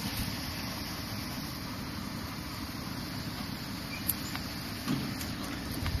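Low, steady rumble of wind on the microphone, with a light click about four seconds in.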